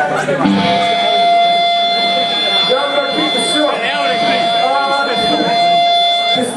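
An electric guitar held through a stack amplifier in one steady, unwavering tone for about five seconds, starting about half a second in and cutting off near the end, over crowd chatter.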